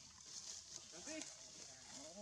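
Faint, brief vocal sounds, one short arched call about a second in, over a steady high hiss.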